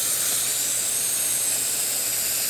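Steady, high airy hiss of dental suction running, unbroken throughout.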